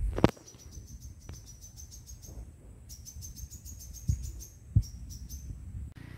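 A high chirping call rapidly repeated, about seven notes a second, in two runs, the second starting about three seconds in. A sharp click comes at the very start, and two dull thumps fall in the second half.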